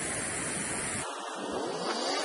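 Clear, shallow river running over stones: a steady rush of water. About a second in it cuts off abruptly and faint music starts to come in.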